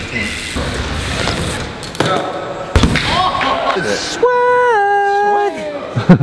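BMX bike riding on wooden skatepark ramps: a rolling rumble, then the sharp thud of a landing about three seconds in. Near the end comes a long held vocal call that steps down in pitch.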